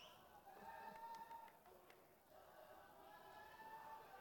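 Near silence, with only faint distant voices.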